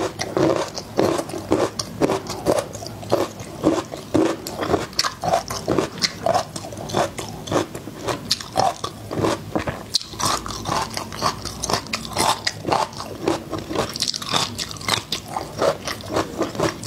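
Close-up mouth sounds of someone chewing whole peeled garlic cloves, crunching and biting in a steady rhythm of about three chews a second.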